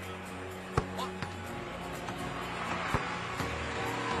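Arena crowd noise with music playing, broken by a few sharp thuds of basketballs, about a second in and again near three seconds.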